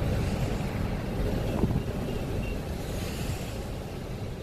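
Steady road and engine noise inside a moving car's cabin: a low, even rumble that slowly eases as the car slows down.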